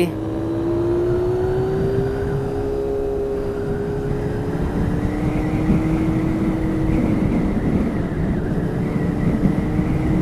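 Motorcycle engine running at a steady cruising speed, its note rising a little and then easing, with wind and road rush on the helmet-mounted microphone underneath.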